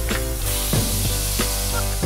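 Elk burger patties and diced onion sizzling on a hot flat-top griddle, a dense hiss that swells a little after the start, heard under music with steady notes and a regular drum beat.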